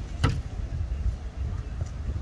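Low, steady rumble of wind on the microphone, with one sharp hit of a volleyball struck by hand about a quarter second in.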